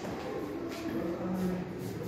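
Indistinct background voices of people talking in a large, echoing hall, with no single clear event.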